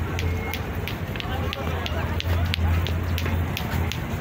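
Wind buffeting the microphone as a steady low rumble, over the background chatter of a crowd of passers-by, with scattered short high clicks.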